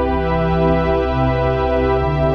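Improvised synthesizer music from a Roland Juno-106 and a Casio CZ-101: sustained, organ-like chords over a steady low drone, with the lower note stepping down about a second in.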